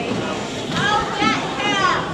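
Spectators' voices in a large hall: background chatter, with a raised, high-pitched voice calling out in the second half.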